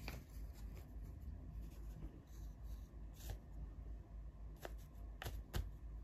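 Paper banknotes being handled and laid down on a cloth: faint paper rustles and a few light taps, the sharpest two close together near the end, over a steady low hum.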